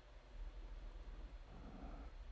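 Faint room tone with a steady low hum; no explosion sound is heard.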